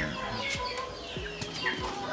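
Fighting-cock roosters clucking in the background, with a few soft knocks.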